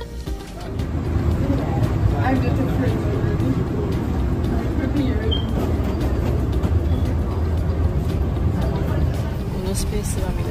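Steady low rumble of aircraft and jet-bridge background noise, starting about a second in, with indistinct voices over it.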